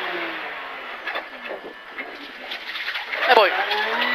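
Porsche 911 GT3 (997) flat-six engine heard from inside the cabin. Its revs fall and it gets quieter through the first half, then it picks up again. A single word of a pace note is spoken near the end.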